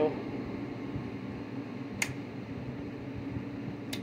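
Steady low fan hum from the running bench equipment, with two sharp clicks, one about halfway through and one near the end.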